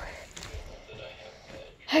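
Faint rustling and handling noise from a phone being carried close against a shirt while its holder walks. Speech begins right at the end.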